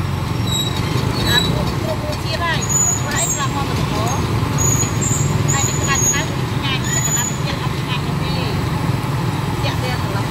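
Oil sizzling in a large wok of deep-frying battered chicken as a wire strainer stirs it. A steady low traffic rumble and background voices run throughout.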